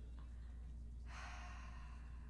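A woman's sigh, a long breathy exhale starting about a second in, over a faint steady low hum.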